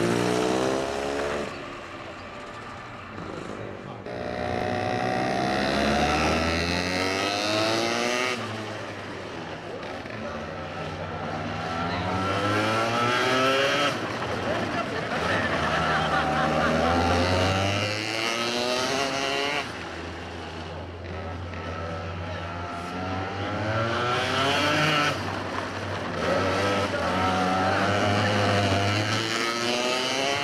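Kids' racing kart engines revving up as the karts accelerate and dropping back as they lift off for the corners, again and again, the pitch climbing with each acceleration.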